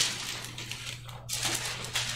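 Thin Bible pages being leafed through at a lectern, a run of quick crackly rustles with a short lull about a second in, over a steady low electrical hum.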